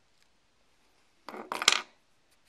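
Small metal scissors snipping through a nail polish strip: a short scraping rustle about a second and a quarter in, ending in one sharp metallic click.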